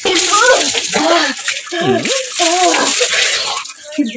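Water poured from a pot over a person's head, splashing down loudly onto the body and floor in a steady rush, with a voice crying out over it.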